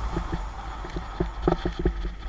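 Mountain bike rattling and knocking as it rolls down a bumpy dirt trail: a run of short, irregular knocks, the loudest about one and a half seconds in, over a steady low rumble.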